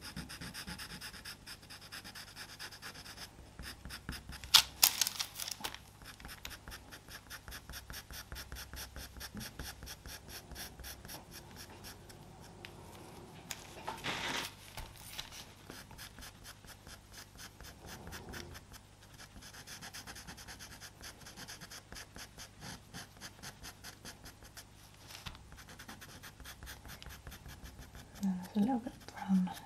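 Pastel pencil scratching on Pastelmat sanded paper in quick short strokes, several a second, as fur is drawn. Two louder scrapes stand out, one at about five seconds in and one at about fourteen.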